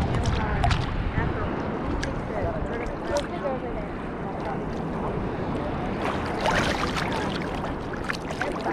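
Small sea waves sloshing and lapping against a camera held at the water's surface, with wind on the microphone. A louder splash about six and a half seconds in.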